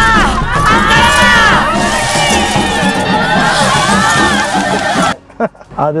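A crowd of women crying out together to a goddess, many voices at once over music. It cuts off abruptly about five seconds in.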